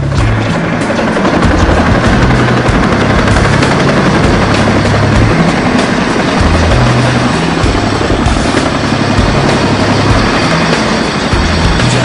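CH-47 Chinook tandem-rotor helicopter passing low and close, its rotor noise and downwash buffeting the microphone, under background music with a heavy bass line.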